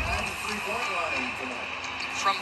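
Television basketball broadcast heard from the TV's speaker: faint commentator speech over a steady background of arena noise.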